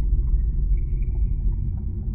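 Sound-design rumble of an animated logo intro: a deep low drone that slowly fades, with faint short electronic blips over it.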